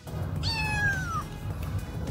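A domestic cat meowing once, a single call of under a second that falls in pitch, starting about half a second in; the cat has its paw caught in a rope snare.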